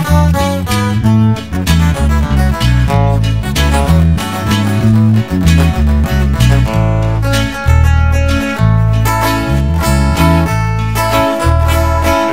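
A twelve-string acoustic guitar picks a fast lead melody over a band with a deep bass line and drums.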